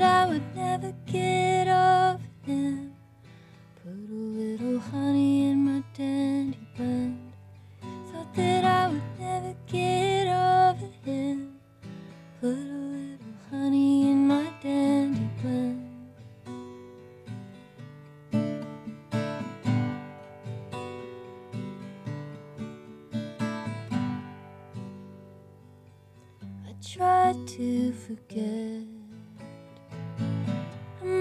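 A woman singing live to her own acoustic guitar. The voice drops out for a guitar-only passage in the middle and comes back near the end.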